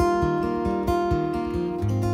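Solo steel-string acoustic guitar, strummed: a chord struck right at the start, then held, ringing chords with a steady beat in the low strings.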